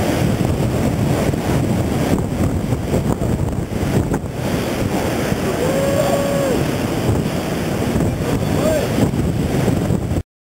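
Heavy surf breaking on a river-mouth bar: a steady, loud wash of waves, with wind buffeting the microphone. About six seconds in, a person's voice calls out briefly in a held tone, and there is a shorter call near the end.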